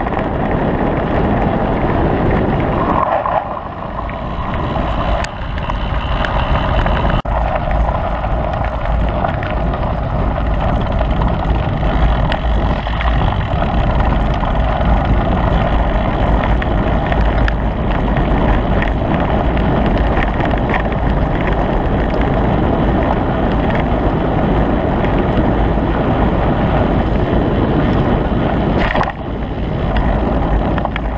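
Steady rush of wind on a moving camera's microphone, mixed with tyres rumbling and rattling over a gravel track. It dips briefly about three seconds in and again near the end.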